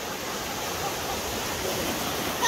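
Surf breaking and foamy wave wash running over the sandy shallows: a steady rushing hiss.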